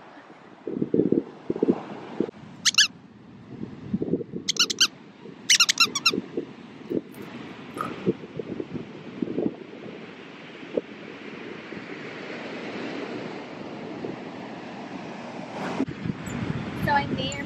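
Beach ambience: wind buffeting the microphone and surf washing in, the surf hiss swelling in the second half. A few short, high squeaky calls come in the first six seconds.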